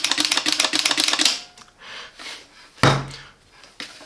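Rapid run of sharp plastic clicks from the Parkside PFS 450 B1 HVLP spray gun being worked in the hands, stopping just over a second in. A single dull thump near three seconds in as the gun is moved.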